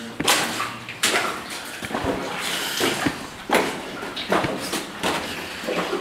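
Boots wading through shallow water on a mine tunnel floor, splashing at each step, about one step a second.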